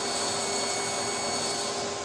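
Table saw with a red 6½-inch, 24-tooth Diablo blade cutting a narrow kerf lengthwise into a wooden handle blank. A steady whine over the hiss of the cut fades out at the very end.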